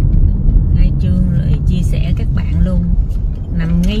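Steady low road-and-engine rumble inside a moving car's cabin, with a voice talking over it.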